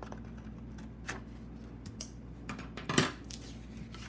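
A cut-out paper sombrero being picked up and moved across a tabletop: soft paper handling with a few light clicks and knocks, the loudest about three seconds in.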